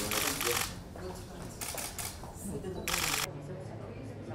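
Camera shutters firing in two rapid bursts, one right at the start, overlapping a spoken word and a laugh, and a shorter one about three seconds in.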